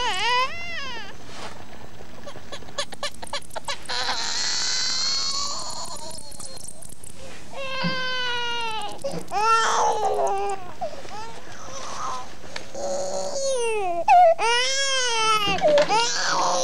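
Infant crying in repeated wailing cries that rise and fall in pitch. About three seconds in there is a run of rapid clicks, followed by a high, thin sound.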